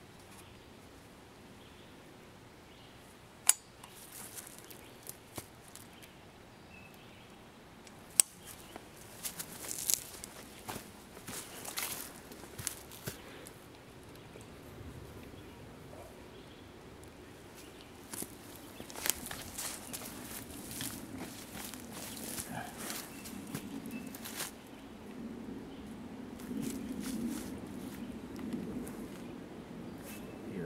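Handling noises from gear being worked: two sharp clicks a few seconds apart, then bursts of rustling and scraping.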